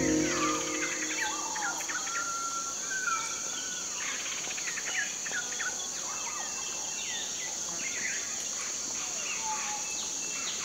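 Outdoor ambience: many birds chirping and whistling, with a steady high-pitched insect drone underneath.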